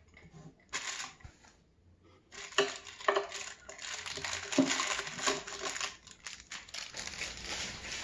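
Hands working inside an open wooden drawer of a bathroom vanity cabinet while fitting a drawer pull: rustling handling noise with several sharp clicks and knocks, busiest from about two to six seconds in.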